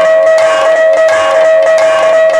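Live kirtan music: one steady held note sounds under quick drum and cymbal strokes, about four or five a second.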